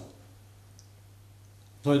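A pause in a man's speech: quiet room tone with a faint steady low hum, his talk resuming near the end.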